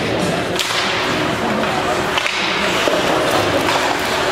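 Ice hockey play off a faceoff: sharp cracks of sticks and puck about half a second in and again later, over skates scraping the ice and rink hubbub.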